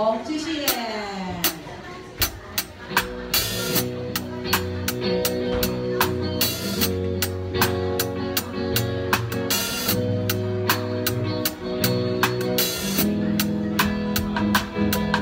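A drum kit played along to a recorded song: a steady run of snare and cymbal hits over bass and other backing instruments, with heavier cymbal crashes a few times. Rising and falling gliding tones from the song fade out in the first second.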